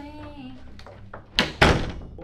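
Wooden door slammed shut: two loud bangs in quick succession about one and a half seconds in, the second ringing briefly.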